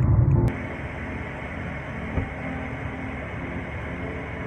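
Low road rumble inside a moving car for the first half-second, then a sudden cut to a quieter, steady hiss with faint steady tones, broken by a single short knock about two seconds in.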